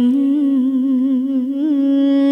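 Vietnamese Nghệ Tĩnh folk-song music: one long held melodic note, wavering in small ornamental turns around a steady pitch.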